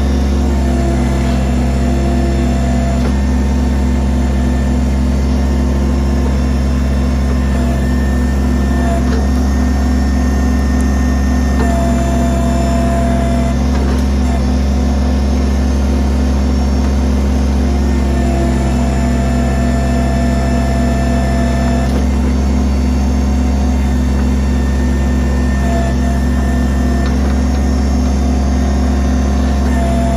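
Kubota BX23S's three-cylinder diesel engine running steadily under the backhoe, with a higher whine from the hydraulics that comes and goes several times as the boom is worked.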